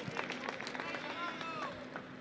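Footballers shouting to each other across an empty stadium's pitch, with a few sharp knocks near the start, typical of a ball being struck.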